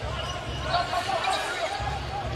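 A basketball being dribbled on a hardwood arena court, heard as repeated low thuds, with game noise from the arena behind it.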